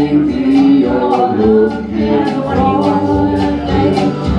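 Live vocal duet, a woman's voice with harmony, over a steadily strummed acoustic guitar, about three strums a second.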